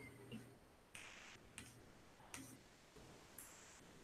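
Near silence with about five faint, scattered clicks from a computer keyboard.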